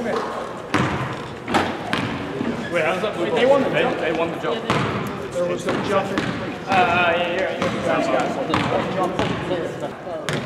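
Gym ambience: many people talking at once, with basketballs bouncing irregularly on a hardwood court.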